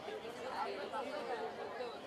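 Low crowd chatter: many voices talking at once at a steady, subdued level, with no single voice standing out.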